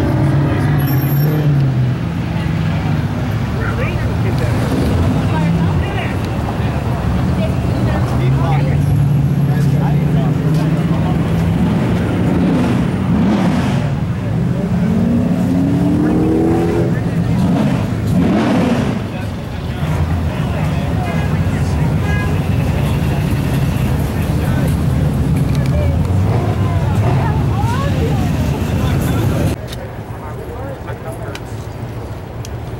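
Car engines running steadily with a low, even note. About halfway through, the pitch rises and falls in what sounds like revs or cars passing.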